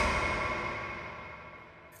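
A single chime-like musical hit that rings with several steady tones and fades out evenly over about two seconds: an edited transition sting.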